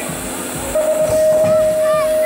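BMX start gate's electronic start tone: one long, steady beep beginning about three-quarters of a second in, the signal on which the gate drops and the riders go.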